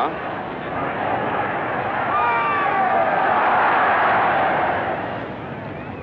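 Large cricket-ground crowd noise swelling to a roar and then easing off, with shouting voices running through it.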